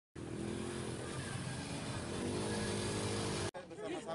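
Outdoor ambience of voices mixed with a running engine, cut off abruptly about three and a half seconds in, after which voices are heard.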